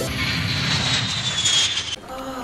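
Jet airliner flying past: a rushing roar with a whine that falls slowly in pitch, cut off suddenly at the end.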